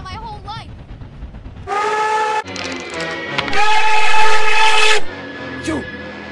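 Nickel Plate Road No. 587's cracked steam locomotive whistle blowing twice: a short blast about two seconds in, then a longer, louder one that stops about a second before the end.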